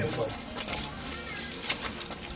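Birds calling in the background, with a few sharp steps or knocks about half a second in and again near the end.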